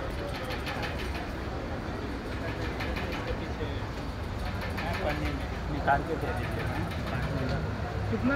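Indistinct background voices over a steady low rumble, with a short louder voice-like sound about six seconds in.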